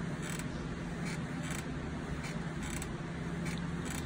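A steady low background hum with a few faint short clicks.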